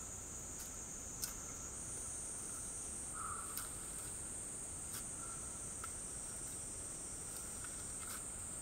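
A steady, high-pitched insect chorus that steps slightly higher in pitch about two seconds in. A few faint knocks come from hand tools digging into the soil.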